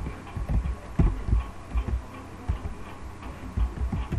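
Steady low electrical hum with irregular soft low thuds, a few a second, picked up by a desk microphone.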